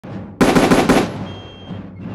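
A volley of musket fire: a sudden ragged crackle of many near-simultaneous shots, starting just under half a second in and lasting about half a second, then dying away.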